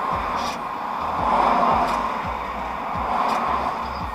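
Road noise inside a moving car, swelling about a second in as oncoming traffic passes, with music playing in the background and a low beat about twice a second.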